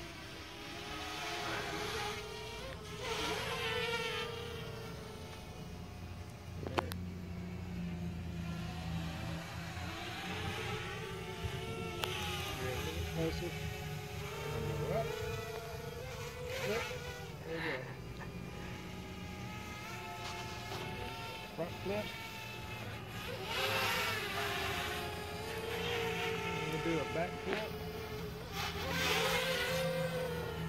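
Blade 200 QX quadcopter's brushless motors and propellers buzzing in flight, the pitch rising and falling repeatedly as the throttle is worked, with several brief louder surges.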